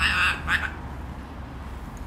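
A parrot calling twice in quick succession: a short, harsh call right at the start and a briefer one about half a second in.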